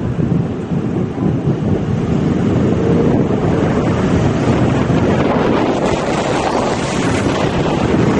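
Wind buffeting the microphone of a camera in a moving car, over the steady noise of the car on the road. The rush gets a little louder about two seconds in.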